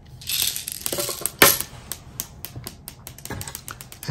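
Plastic airsoft BBs being pushed from a speed loader into an airsoft pistol magazine: a brief rustle, then a run of small plastic clicks and rattles, with one sharper click about a second and a half in.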